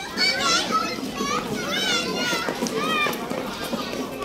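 Many young schoolchildren's voices chattering and calling out over one another, high-pitched and continuous.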